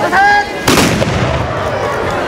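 A man's shout, then a matchlock (hinawajū) gun firing: one loud black-powder report less than a second in, ringing on briefly.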